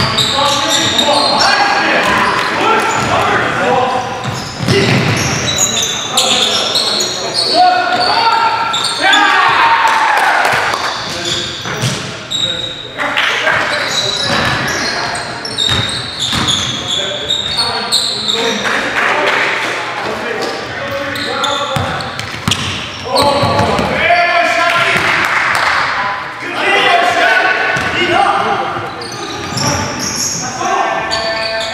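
Live game sound of a basketball being dribbled and bounced on a hardwood gym floor, with players' voices calling out, all echoing in a large hall.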